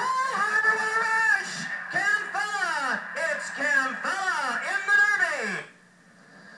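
Horse-race announcer's voice calling the stretch run of a harness race, loud and excited, with long swooping rises and falls in pitch. It breaks off about five and a half seconds in.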